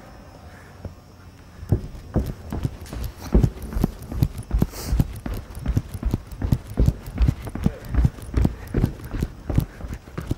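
Sneakered footsteps thudding on a rubber runway in a steady rhythm of about two to three steps a second, starting about two seconds in.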